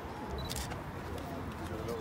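Camera shutters clicking a few times, the loudest about half a second in, over the chatter of a crowd.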